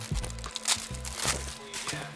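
Background music with a bass beat. Over it, the old, crumpled window tint film crinkles as it comes away from the glass.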